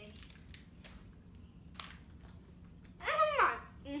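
Faint rustling and small clicks of hands handling a snack packet, then a short rising-and-falling "mmm" from a child's voice about three seconds in.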